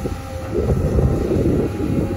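XCMG XE215C excavator running as its boom lifts a full bucket of wet clay: a steady low engine and hydraulic rumble, with wind buffeting the microphone.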